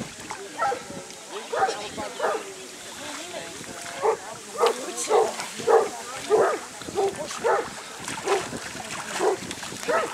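A dog barking over and over, a few times early on and then steadily, about every half second to a second, in the second half.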